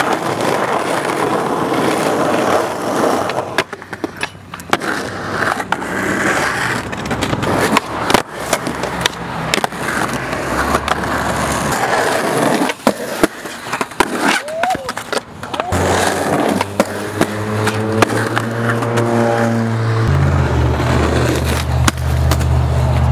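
Skateboard wheels rolling on concrete, broken by repeated sharp clacks as boards are popped and land and grind or slide on curb edges.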